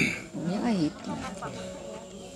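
A person's voice, brief and wavering up and down in pitch about half a second in, followed by fainter voice scraps.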